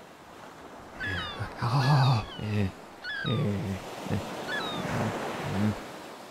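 A low, gruff gibberish voice grunting and mumbling, dubbed as the crab's own voice, with several short high chirps that fall in pitch laid over it. It starts about a second in.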